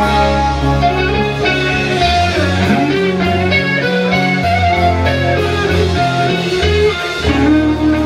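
Live rock music: an electric guitar playing through an amplifier, with a melodic line of changing notes over sustained low notes.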